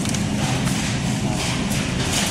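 Steady low hum of supermarket refrigerated display cases and air handling, with rubbing and light bumps from a handheld phone being moved.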